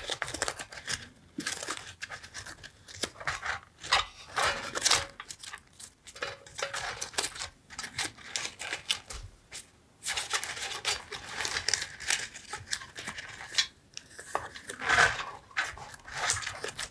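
Thin, translucent paper cutouts being shuffled and sorted by hand in a tin: irregular rustling and crinkling in short bursts, with light clicks and brief pauses.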